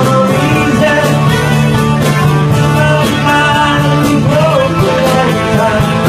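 Live rock band playing, with drum kit, guitars and bass and a voice singing, loud and steady with no break.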